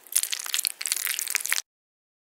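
Crisp crunching, crackling noise made of many rapid sharp clicks, cutting off suddenly about one and a half seconds in.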